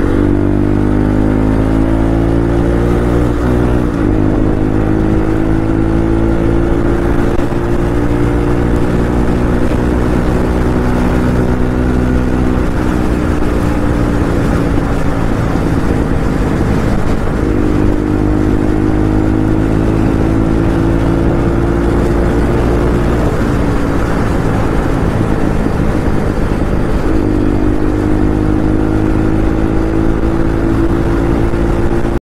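Bajaj Pulsar 125's single-cylinder engine pulling at highway speed. Its pitch climbs in the first few seconds, eases off around the middle, then picks up again twice as the throttle opens.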